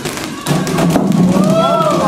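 Several rubber playground balls thrown at once, bouncing off a hard floor and into plastic buckets: a rapid scatter of thuds and taps, with voices calling out in the second half.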